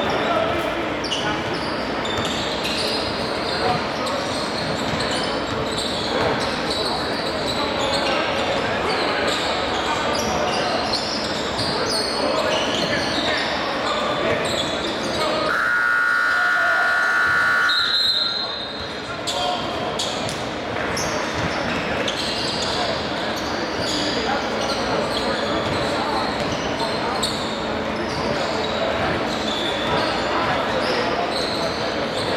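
Basketball bouncing on a hardwood gym floor among many voices, echoing in a large hall. About halfway through, a loud steady horn sounds for about two and a half seconds, typical of a gym scoreboard buzzer.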